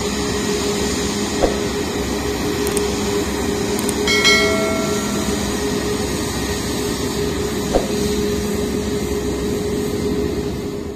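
Comac C919 airliner's CFM LEAP-1C turbofan engines running at taxi power: a steady rushing noise over a low, even hum. About four seconds in, a brief higher ringing tone sounds, and there are two short clicks.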